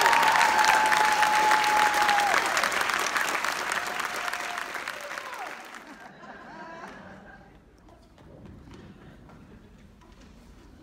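Audience applauding at the end of a song, with the song's final held note sounding over the clapping for the first couple of seconds. The applause dies away over about six seconds, leaving quiet hall sound.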